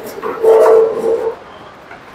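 A goat bleats once, a single call held at a steady pitch for about a second.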